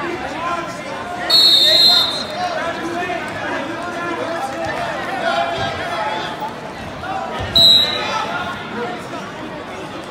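Referee's whistle blown twice, a longer blast about a second in and a short one near the three-quarter mark, over steady crowd shouting and chatter in a gym.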